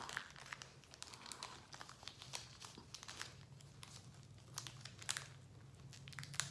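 Foil Pokémon card booster pack wrapper crinkling faintly in the hands as it is slowly peeled open, with scattered small crackles and a few louder crinkles near the end.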